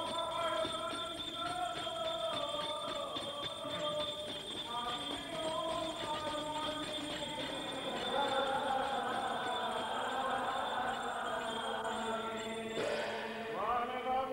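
Syriac Catholic liturgical chant sung in long, slowly moving held notes, the sound growing fuller from about eight seconds in. A steady high whine runs underneath.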